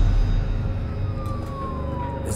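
A siren wailing, its pitch falling slowly, over a deep steady rumble.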